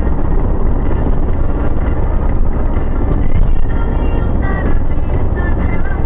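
Steady road and engine rumble inside the cab of a Ford Transit van cruising on a motorway at close to 70 mph.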